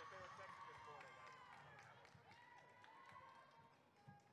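Near silence in a gymnasium, with faint talking from spectators in the stands, fading away.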